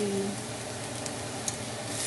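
Diced onions frying with bacon in butter in a small pot, a steady soft sizzle, with one light click near the end.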